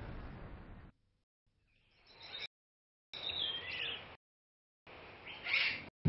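Birds calling in forest ambience: a few short, high chirps and whistles with gliding pitch, separated by quiet gaps. A rushing noise fades out in the first second.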